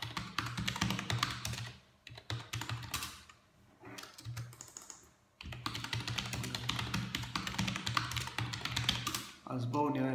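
Computer keyboard typing: quick runs of key clicks with a low hum under them, broken by pauses about two seconds in and again around four to five seconds in.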